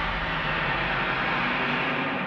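Godzilla's roar: one long, loud call that starts to fade near the end.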